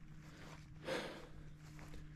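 Mostly quiet, with one brief soft noise about a second in.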